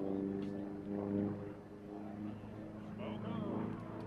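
Piston engine of a single-engine warbird fighter flying overhead: a steady drone that weakens in the second half, with voices near the end.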